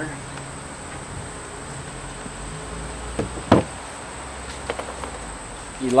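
Steady background hum of insects, with a single sharp knock about three and a half seconds in and a couple of fainter taps around it.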